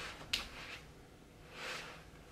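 Soft rustling from a person turning on the spot, with one sharp click about a third of a second in.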